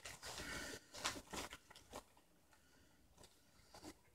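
Pokémon trading cards being handled: faint rustling, then a few light taps and scrapes, dying away about halfway through.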